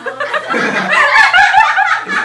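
Several young people laughing together, loud and continuous.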